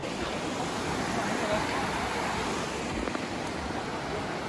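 A fast-flowing creek rushing over rocks, heard as a steady, even wash of water.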